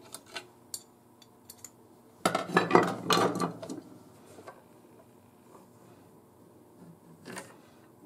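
Steel parts of an SVT-40 rifle's gas system clinking and scraping by hand as the rod is removed and the gas tube is slid forward: a few light clicks at first, a louder cluster of metallic clatter a little over two seconds in, and one more short clink near the end.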